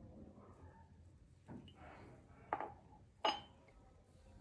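Three light knocks and clinks on a stainless steel pot, about a second apart, the last one the loudest with a short ring.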